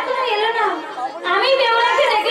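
A performer's amplified voice in Manasa jatra, delivered through the stage microphones in long phrases whose pitch rises and falls, with a short break about a second in.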